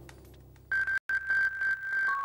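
Broadcast closing music fading out, then a high, steady electronic synthesizer tone that comes in about two-thirds of a second in and pulses several times a second, with a brief cut-out near the middle.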